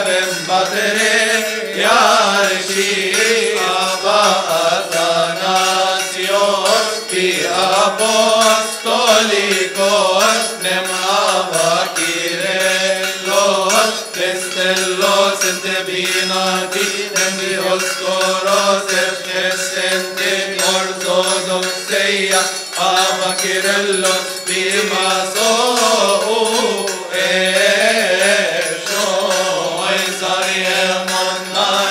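A group of Coptic Orthodox deacons chanting a hymn together in the liturgical style, with long drawn-out notes that bend and slide over a steady held low tone.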